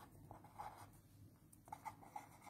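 Faint scratching of a pen writing on paper held on a clipboard. Short strokes come in the first half second and again near the end, with a quiet gap between.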